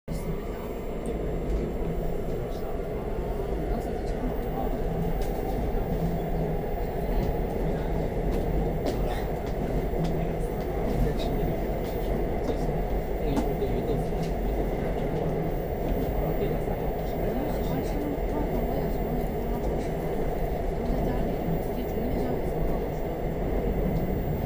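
Seoul Metro Line 4 subway train running steadily, heard from inside the car.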